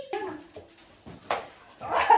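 Dogs whining and whimpering, a wavering high whine in the first half, with a short sharp sound a little past halfway.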